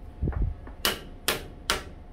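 Three sharp metallic clicks about half a second apart, each with a short ring, after a soft knock: hand tools being handled against each other.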